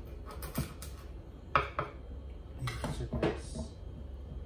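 Kitchen knife cutting the tails off fresh sardines on a wooden cutting board: a series of sharp knocks of the blade against the board, the loudest about one and a half seconds in.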